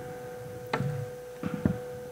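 A desk microphone and its cable being handled, giving three short knocks and bumps over a steady high electrical hum in the feed.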